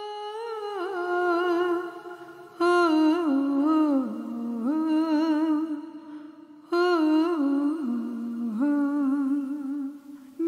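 A single voice humming a slow, wordless melody in several phrases with short breaks between them. It is the programme's theme tune, which runs on into the sung title line.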